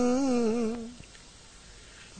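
A voice holds one long chanted note, the drawn-out end of a line of Vietnamese verse recitation. It wavers slightly and trails off just under a second in, and a quiet pause follows.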